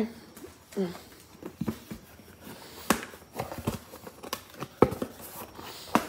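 Cardboard box being opened by hand: flaps rubbing and bending with packing paper crinkling, and a few sharp knocks and clicks scattered through.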